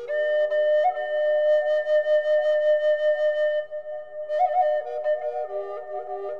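Native American flute music: a long held note with a quick grace-note flick about a second in, then after a short dip a new phrase of fast ornaments that steps down in pitch.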